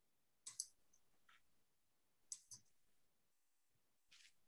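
Near silence on an open meeting line, broken by two faint double clicks about two seconds apart.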